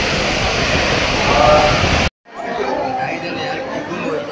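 Crowd of people talking at once, a dense steady din of voices in an enclosed stairway. About halfway through it cuts off abruptly, then resumes as quieter crowd chatter with individual voices standing out.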